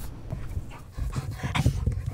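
A silver Labrador retriever panting close to the microphone in quick, irregular breaths, louder from about a second in.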